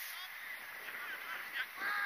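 Short honking calls, a few faint ones early and a louder cluster near the end, over steady outdoor background noise.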